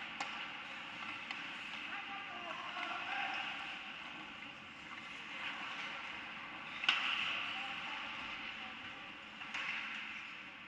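Ice hockey play: a steady scrape of skates on the ice, broken by sharp cracks of stick and puck, the loudest about seven seconds in, with a quieter one near the start and another near the end.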